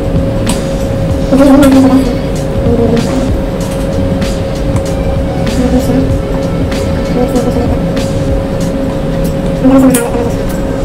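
Metal spoon stirring in a ceramic bowl of coconut milk and cornstarch, with scattered light clicks against the bowl over a steady hum. A brief, louder voice sound comes about a second and a half in and again near the end.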